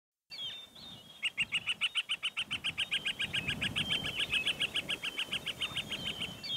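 Bird song: two short chirps, then from about a second in a long, fast trill of evenly repeated notes, about seven or eight a second, that runs for several seconds.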